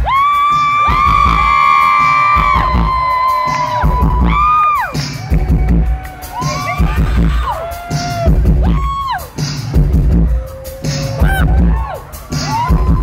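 Live band playing on a concert stage, with deep bass hits every second or two, and crowd cheering and screaming over the music.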